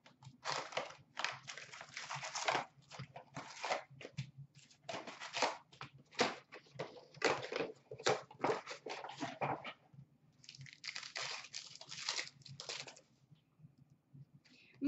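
A cardboard trading-card hobby box is torn open by hand and its wrapped packs pulled out, crinkling and rustling in irregular bursts; after a short lull, a pack is handled and ripped open.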